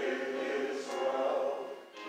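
Church congregation singing a hymn together in one held phrase, breaking briefly just before the end.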